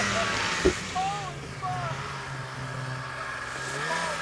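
Snowmobile engine running steadily at a distance as the sled rides away down the slope, with a sharp knock under a second in and faint voices.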